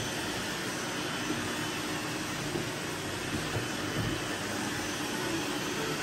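Several robot vacuum cleaners running together on a mattress: a steady mechanical hum of motors and brushes.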